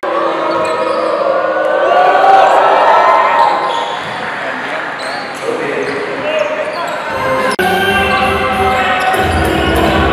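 Indoor basketball arena ambience: a crowd of voices echoing in the hall. About three quarters of the way through, music with a bass beat comes in over the arena's sound system.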